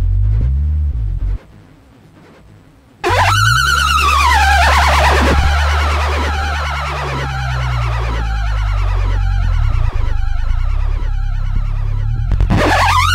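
Electroacoustic noise music. A low layered drone cuts out about a second and a half in. After a quieter gap, a loud, dense layer enters abruptly at about three seconds: a high tone sweeps down and back up in repeated arcs over a steady low drone and a wash of hiss.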